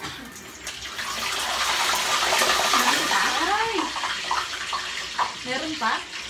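Pork leg frying in hot oil in a pot, a loud sizzle that swells over the first few seconds and then eases off.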